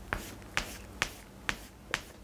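Chalk striking a blackboard in five short, sharp taps, about two a second, each one the start of a quick diagonal stroke.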